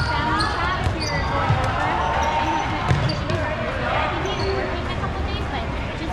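Dodgeballs being thrown and hitting the gym floor and players in several sharp thuds, the loudest about three seconds in, with players' voices calling out across the hall.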